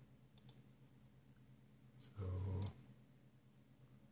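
Quiet room sound with a few faint clicks in the first second, then a short low hum from the voice lasting about half a second, about two seconds in.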